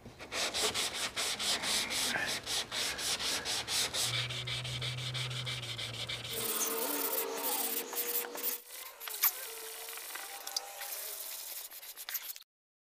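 Block-sanding of cured body filler and glazing putty by hand, with a flexible sanding block and 180-grit paper, to level the repair before primer. Quick, rhythmic, scratchy back-and-forth strokes, which turn quieter and less regular after about six seconds.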